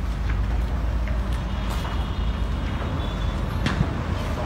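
A large building fire burning: a steady low rumble with a few sharp cracks and pops, the loudest just before the end.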